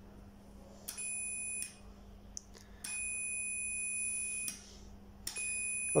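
Fluke 179 multimeter's continuity beeper giving a steady high beep three times: briefly about a second in, longer from about three seconds in, and again near the end. Each beep marks the probes across a closed switch contact reading about zero ohms, and each starts with a light click.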